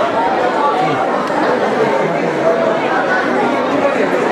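Audience chatter: many people talking at once in a large hall, a steady babble of overlapping voices.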